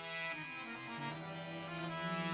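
Harmonium playing a slow melodic phrase: held reed notes that step to new pitches a few times.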